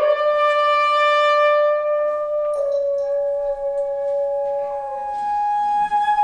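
A French horn holds a long high note that dips slightly in pitch about two and a half seconds in and fades out near the end. About three seconds in, a second wind instrument enters above it with a steady held note.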